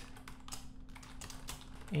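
Typing on a computer keyboard: a run of quick, irregular keystrokes, over a faint steady hum.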